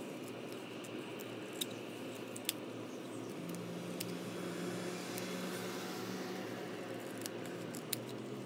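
Scissors snipping through folded paper: a handful of short, sharp snips at uneven intervals, over a steady low background hum.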